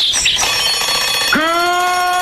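Opening of a TV programme's title jingle: a loud alarm-clock bell ringing sound effect starts suddenly. About a second and a half in, a long held musical note comes in.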